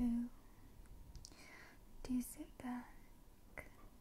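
A woman whispering close to a fluffy-covered microphone, with a few short voiced syllables and small clicks between them.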